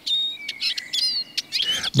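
Eurasian siskin singing: a chattering, lively twitter of quick high chirps and short whistles, with one long drawn-out note in the middle.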